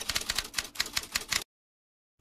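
Typewriter sound effect: a rapid run of key clicks that cuts off abruptly about one and a half seconds in.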